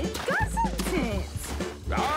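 A cartoon character's short, dog-like vocal calls that bend up and down in pitch, over background music.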